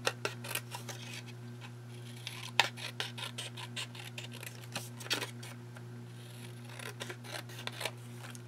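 Small scissors snipping around the edges of photographic prints in a quick run of short cuts, one sharper snip about two and a half seconds in. A steady low hum runs underneath.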